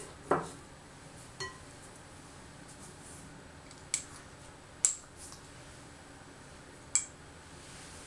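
A small porcelain salt pot being handled with a little spoon: a dull knock near the start, then four short, sharp clinks of spoon and lid on porcelain, a second or two apart, a couple of them with a brief ring.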